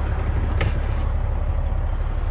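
Steady low rumble of a Freightliner semi-truck's engine and road noise inside the cab while cruising, with one brief click a little over half a second in.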